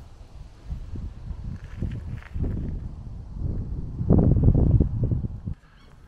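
Wind buffeting the microphone: an irregular low rumble that swells to its loudest about four seconds in and cuts off suddenly near the end.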